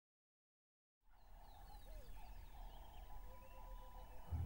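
Faint wild-bird chorus fading in about a second in: many short chirps and calls over a steady pulsing trill and a low rumble of open-air ambience.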